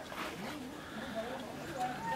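Faint, indistinct voices in the background, with no clear words.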